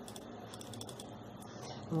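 Faint clicks of a computer keyboard and mouse being used, over low room noise.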